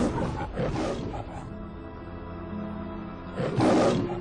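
A lion roar sound effect of a film-studio lion logo, heard over music with held notes. There are roars right at the start and about half a second in, and the loudest roar comes near the end.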